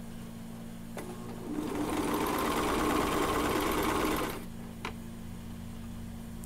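Brother 2340CV coverstitch machine sewing. It starts about a second and a half in, runs steadily for about three seconds, then stops abruptly. A light click comes just before it starts and another just after it stops.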